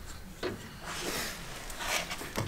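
Faint rubbing and handling noise from the tilt-lock lever of a Felder F700 spindle moulder being released by hand, with a soft knock about half a second in and more rubbing near the end.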